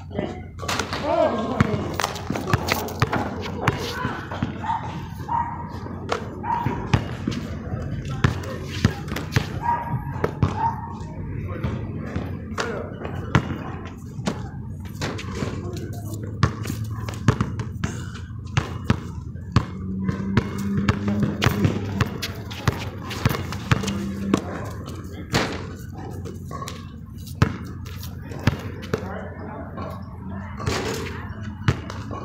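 A basketball bouncing on an outdoor asphalt court and hitting the backboard and rim during shooting practice: repeated sharp thuds at irregular intervals.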